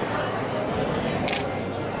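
A single sharp camera shutter click a little past halfway, over the murmur of a busy room.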